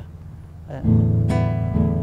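Nylon-string classical guitar strummed: a few chords start about a second in and ring on.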